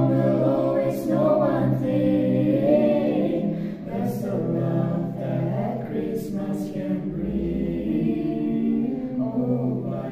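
A small mixed group of young men's and women's voices singing together unaccompanied, holding long notes in unison.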